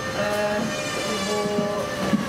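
A woman's voice held on a level pitch between words, a drawn-out hesitation sound before she goes on speaking.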